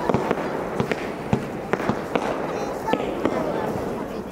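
Fireworks going off: sharp bangs from aerial shells bursting, about two or three a second, over a continuous crackling rumble.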